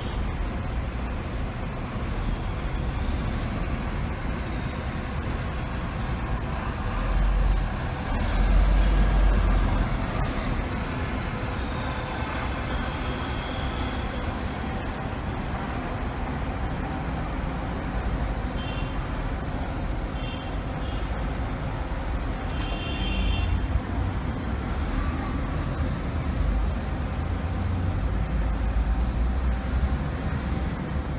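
Outdoor road traffic with large coaches and buses running past. The low engine rumble swells about 8 seconds in and again near the end, and a few short high-pitched beeps sound in between.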